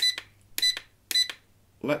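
Radio transmitter trim beeping three times, short evenly spaced electronic beeps about half a second apart, one for each click of the forward pitch trim as it steps the micro drone's trim forward to correct a backward drift.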